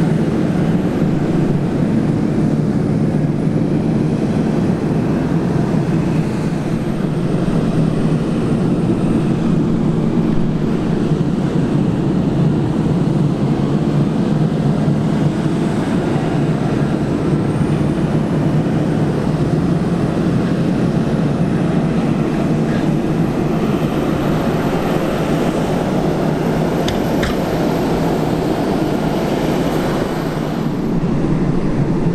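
Claas Xerion tractor's diesel engine running steadily under load as it drives across a silage clamp, pushing and compacting the crop. A faint high whine drifts up and down in pitch above the engine.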